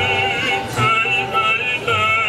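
Operatic female voice singing held notes with a wide vibrato, accompanied by piano.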